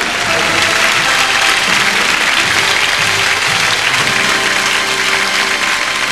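Studio audience applauding steadily, with music playing underneath.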